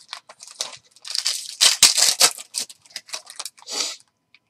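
Foil trading-card pack wrappers crinkling and tearing as packs are ripped open by hand, a quick run of rustles and rips that is loudest in the middle, followed by the cards being pulled out.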